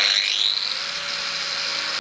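Angle grinder starting up, its whine rising as the disc spins up to speed, then running steadily with a hissing edge while it cuts an opening in a clear plastic storage container.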